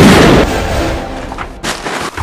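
A loud gunshot, dying away over about half a second, with a second, shorter sharp crack about a second and a half in.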